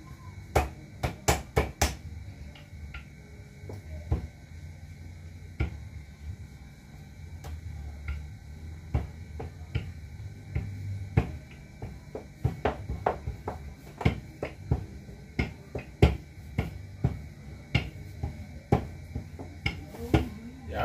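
Roti dough being worked by hand on a kitchen counter: irregular sharp pats and taps, a quick run of them in the first couple of seconds, then scattered ones throughout.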